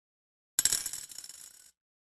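A coin dropped into a piggy bank: a sharp metallic clink about half a second in, then a quick run of smaller clinks and rattles as it settles, fading out within about a second.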